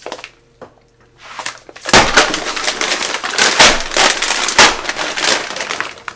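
Plastic bag of frozen berries crinkling and crackling loudly as it is handled close up, starting about two seconds in and lasting nearly four seconds.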